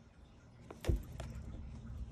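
Cats scuffling inside a cardboard box: a sharp knock against the cardboard about a second in, with lighter taps around it, then a low rumbling scuffle of bodies and paws against the box.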